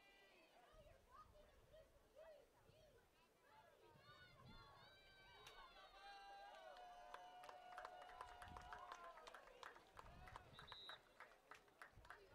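Near silence: faint, distant voices, with a faint held tone sliding slightly down in the middle and a run of light clicks in the second half.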